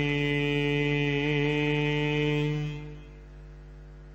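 Sikh Gurbani kirtan: a long sung note held over harmonium at the end of a verse line. About three seconds in it dies away, leaving a soft sustained harmonium tone.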